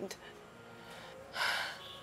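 A crying woman draws one short, sharp breath about a second and a half in, a tearful gasp between sentences.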